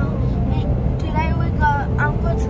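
Steady road and engine noise inside a moving car's cabin, with a child's voice over it, clearest in the second half.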